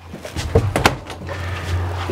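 Travel trailer's interior bathroom door pushed shut, with two sharp clicks about half a second in, over a low steady hum.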